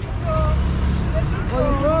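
Road traffic running past: a low rumble of passing vehicles that swells about half a second in, with brief voices over it.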